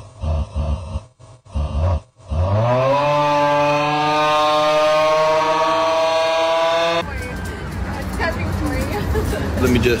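A person's voice gives a few short cries, then one long held wail that glides up and then holds steady for about four seconds. It cuts off abruptly and gives way to a steady rumbling noise.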